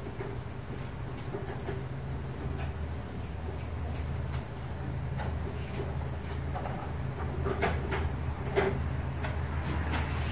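A steady low hum with a faint high whine above it, and scattered light clicks and knocks that come more often in the second half.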